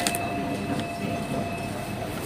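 Steady mechanical rumble and hum of a supermarket checkout, with a sharp click right at the start and a thin steady tone that stops near the end.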